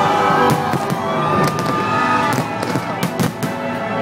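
Fireworks bursting overhead in a rapid barrage of sharp bangs and crackles, with music playing underneath.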